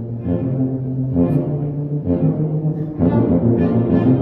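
Tuba playing a melody of held low notes, accompanied by violins; the music grows louder about three seconds in.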